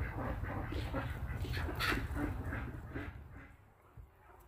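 Backyard chickens and ducks calling, a scatter of short clucks and squawks over a steady low rumble, fading out near the end.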